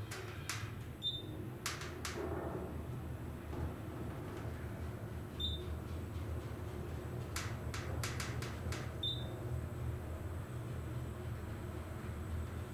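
Modernized Haughton traction elevator car travelling upward, a steady low hum and rumble heard from inside the cab. Four short, faint high beeps come at roughly even spacing, with a few faint clicks.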